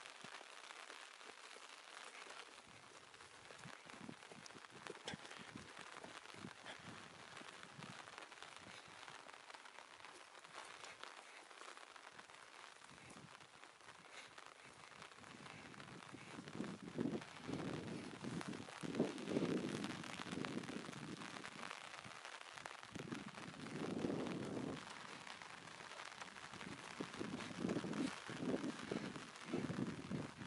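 Rain pattering on an umbrella held over the camera: a steady hiss with many small drop ticks. In the second half, irregular louder low rumbles on the microphone come and go.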